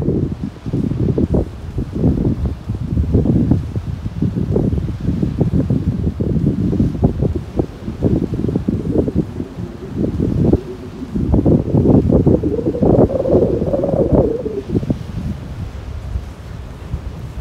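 Wind blowing across the microphone in uneven gusts: a loud, low rumble that surges and drops, heaviest in the last few seconds.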